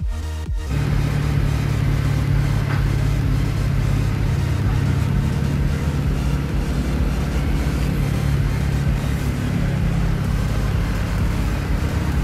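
Electronic music cuts off just under a second in, followed by a vehicle engine running steadily with a low rumble.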